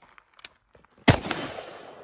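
A single 5.56 rifle shot from a CZ Bren 2 MS short-barrelled carbine about a second in, echoing and slowly dying away; a faint click comes shortly before. It is the last round, after which the bolt locks back on the empty magazine.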